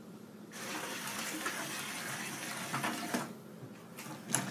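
A Lego WeDo 2.0 robot dragging a chained Lego model across a wooden table: a steady scraping rush that starts about half a second in and stops a little after three seconds, with a few clicks near the end.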